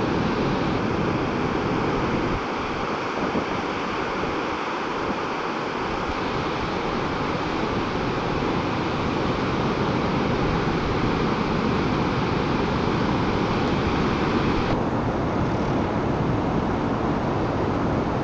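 Ocean surf breaking on a beach: a steady, unbroken wash of noise, with wind buffeting the microphone.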